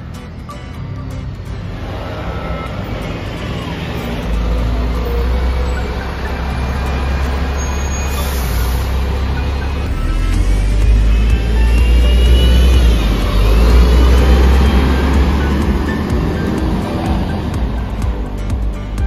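A double-decker bus's engine running close by: a heavy low rumble that grows louder, with a whine that rises and dips about two-thirds of the way through. Background music plays underneath.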